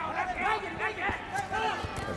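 Kickboxing strikes landing: a few sharp smacks of gloves and kicks about a second in and near the end, under voices calling out.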